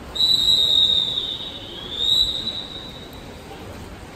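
Swimming referee's whistle: one long blast of about three seconds whose pitch sags in the middle and lifts again before fading. It is the long whistle that tells the backstroke swimmers already in the water to take their position at the wall before the start.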